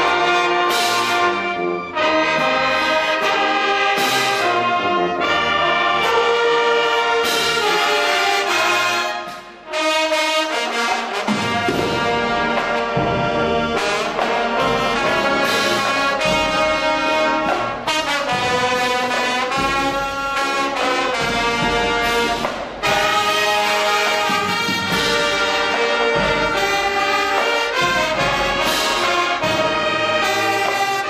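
High school marching band playing a tune, brass section with trumpets and trombones over drums. The music breaks off for a moment about nine seconds in, then comes back with a fuller low brass and drum sound.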